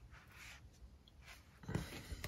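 Mostly quiet room with a few faint soft hisses, then a brief handling noise near the end as a hand reaches in beside the motorcycle's front brake caliper.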